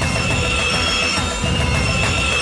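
Sound-design screech of a grinding disc on metal, a sustained high metallic squeal in two stretches with a short break in the middle, laid over station-ident music.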